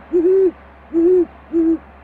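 Great horned owl hooting loudly at close range: a longer deep hoot, then two shorter ones, each held at one steady pitch.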